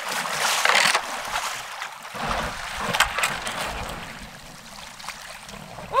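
Kayak paddle splashing in shallow water, loudest in the first second. About two seconds in, a lower grinding noise with a few clicks follows as the kayak's hull scrapes onto a gravel bank.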